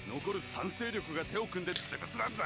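Subtitled anime dialogue: a character speaking in Japanese over quiet background music, played back at a moderate level.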